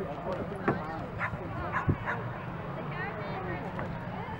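A dog yapping, several short sharp barks in quick succession in the first half, over the murmur of spectators' chatter.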